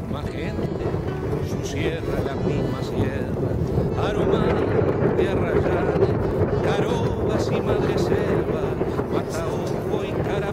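Wind buffeting the camera microphone in a steady low rumble, with voices and music mixed in underneath.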